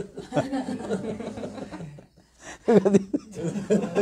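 A man laughing, with a short pause about two seconds in before a louder burst of laughter.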